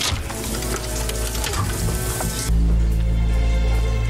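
Film soundtrack: a hissing, crackling noise over music, giving way about two and a half seconds in to a deep, heavy rumble.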